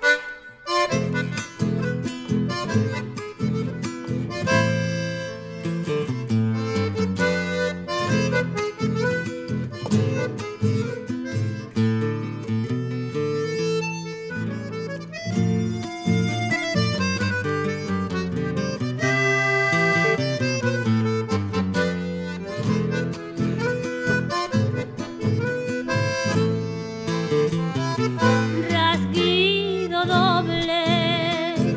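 Accordion and acoustic guitar playing the instrumental introduction of a rasguido doble, an Argentine Litoral folk rhythm, with the accordion's reedy melody over the guitar's strummed accompaniment.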